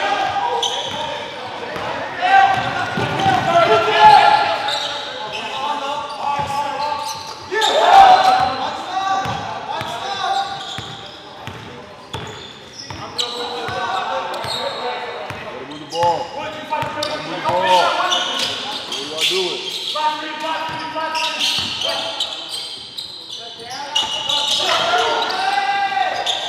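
Basketball game in a gymnasium: a basketball bouncing on the hardwood court amid players' shouts and calls, echoing in the large hall.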